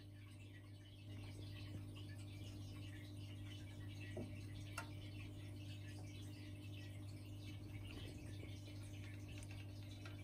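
Quiet room tone: a steady low hum with a couple of faint ticks near the middle.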